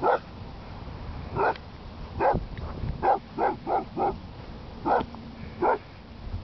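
Boxer dog barking repeatedly, about nine short barks, with a quick run of four near the middle.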